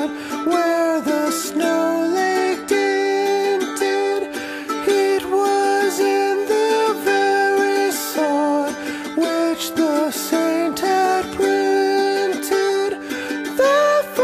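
Acoustic guitar music, strummed chords with a plucked melody moving from note to note.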